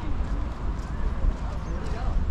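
Outdoor promenade ambience: footsteps on stone paving over a steady low rumble, with faint voices of passers-by.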